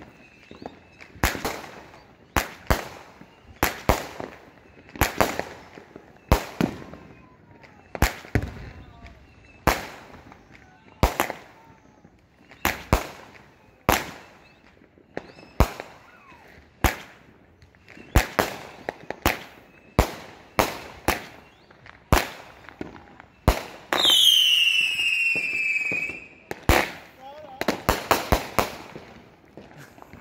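World Class Fireworks "Pee-Ka-Boo" 25-shot, 200-gram firework cake firing: sharp bangs in quick pairs, a launch and then its break, about one pair a second. About 24 seconds in, one shot gives a falling whistle lasting about two seconds, and near the end several shots go off close together.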